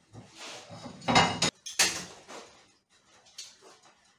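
Stainless steel pans being moved and set down on a gas hob's cast-iron pan supports: two loud metal clanks between about one and two seconds in, then lighter clatter.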